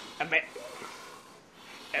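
A man's voice saying "I'm" just after the start and again near the end, with a quieter stretch between.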